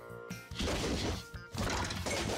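Background music over the noise of a trampoline jump and basketball slam dunk: two crashing swells of noise, one about half a second in and another near the end.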